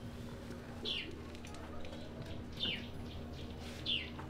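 A bird calling repeatedly: a short high chirp sliding downward in pitch, three times at uneven intervals, over a low steady hum.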